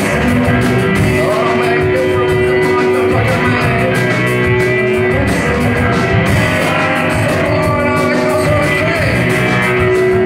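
A live rock band playing loud, with distorted electric guitars and a full drum kit, and a woman's lead vocals over them.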